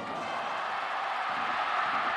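Baseball crowd in a domed stadium, a steady wash of noise that swells a little as a ground ball is played.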